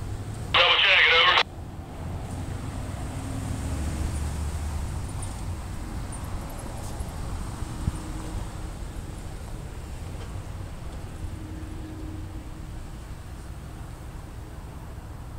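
A low, steady rumble of town traffic and distant engines. About half a second in, it is broken by a short, loud squawk of a voice through a radio speaker, thin and narrow in tone, that cuts off abruptly.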